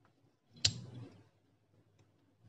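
A single sharp click, a little over half a second in, followed by brief soft handling noise, as a short piece of thin steel wire is worked into a small hole drilled in a wooden strip.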